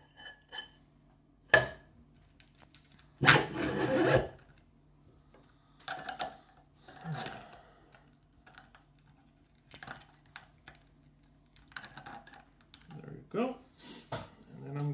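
Handling noises from fitting abrasive paper onto a metal grinding disc: scattered knocks and light metal clinks, with one louder rustle or scrape lasting about a second, about three seconds in.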